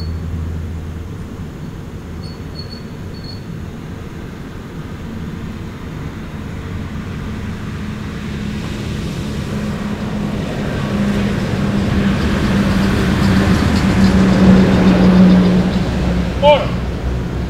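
A road vehicle approaching along the road, its engine note and tyre noise growing steadily louder through the second half and peaking near the end.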